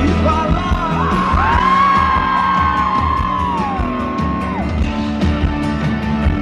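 A live rock band plays with vocals: electric guitar, bass and drums. A long high note is held from about one second in until nearly five seconds.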